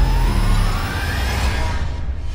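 Cinematic trailer riser: a tone climbing steadily in pitch over a deep low rumble, building toward the title logo.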